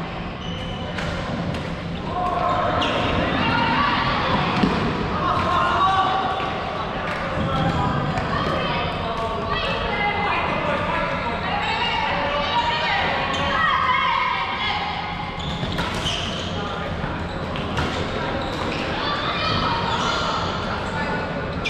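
Floorball being played in a large, echoing sports hall: sharp clacks of sticks and the plastic ball, mixed with players' indistinct calls and shouts.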